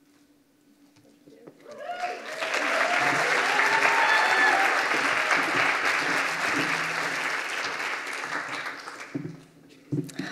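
Audience applauding, starting about a second and a half in and dying away near the end, with a few voices calling out over the clapping early on.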